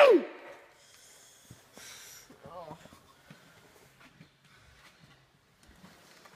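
A loud voice falls off and cuts out just at the start. Then it is quiet, with a few faint breaths or snorts and a faint murmured voice.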